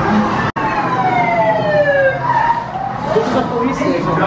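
A siren wail falling steadily in pitch over about two seconds, after a brief dropout about half a second in.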